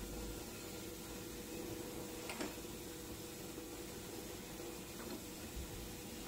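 Steady machine hum from a press brake, with a couple of faint metal clicks from the upper punch tooling being handled in its clamp.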